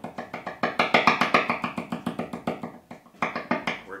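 Rapid tapping on an electric guitar's bridge pickup (an active EMG humbucker), amplified through a guitar amp as a fast run of knocks at about ten a second. The knocks come through cleanly, showing the pickup and its controls are working. They grow louder and brighter about a second in and duller near the end as the tone control is tested.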